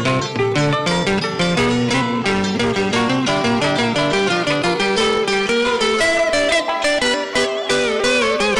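Instrumental interlude of Vietnamese tân cổ music: a plucked guitar playing a fast run of notes over a bass line, with bent, wavering notes near the end.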